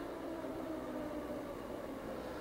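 Steady low hum of room tone, with a faint even tone in it and no distinct events.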